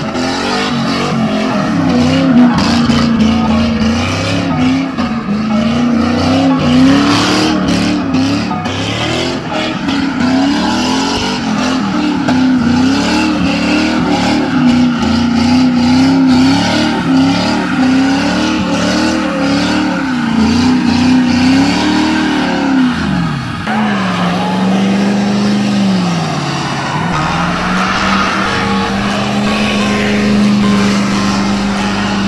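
Ford Mustang doing donuts: the engine revs up and down over and over with the rear tires squealing. About three-quarters of the way through the revs fall away, and an engine then holds a lower, steadier note.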